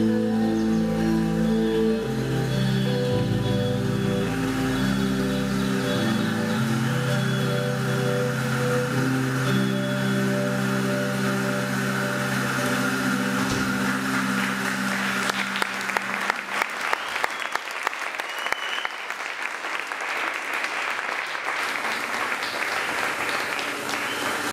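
A live rock band with electric guitars and bass holding long sustained closing notes that fade away over about the first sixteen seconds. Audience applause comes in as the notes fade and fills the rest.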